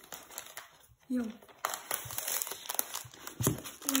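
Thin protective wrap around a new laptop crinkling as it is handled and pulled, a dense run of crackles from about one and a half seconds in until near the end.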